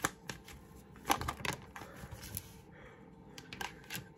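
Tarot cards being shuffled by hand: an irregular string of light clicks and flicks, with a soft rustle near the middle.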